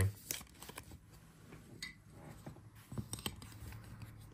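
Trading card being slid into a rigid plastic top loader: faint scrapes and a few light ticks of card and plastic rubbing together.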